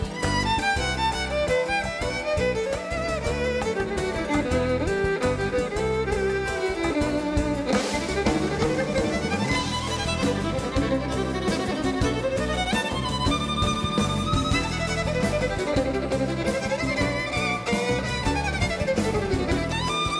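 Two violins trading fast melodic lines, playing off each other over a band's steady drums and bass, with runs that slide down and back up in pitch.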